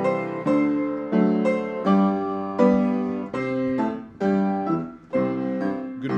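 Piano playing slow, sustained chords, a new chord struck every half second or so and left to ring and fade.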